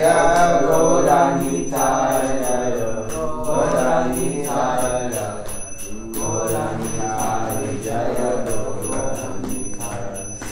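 Devotional chanting sung in a melodic line, with small hand cymbals (kartals) chiming a steady beat.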